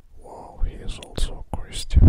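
A person whispering, with hissing s-like sounds, starting about half a second in.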